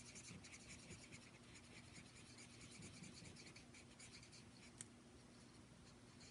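Faint scratching of a Stampin' Blends alcohol marker's tip on cardstock, laid sideways and colouring in short, repeated strokes, with one small tick a little before the end.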